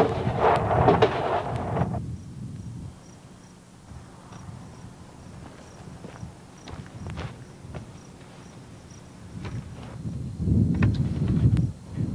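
A large plastic seed-ball drum being turned by hand, with the clay seed balls inside rattling and tumbling for about two seconds. After that come faint scattered clicks, and then a low rumble near the end.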